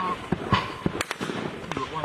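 Small-arms rifle fire: sharp, irregular single shots, about half a dozen in two seconds, some close together, with men's voices between them.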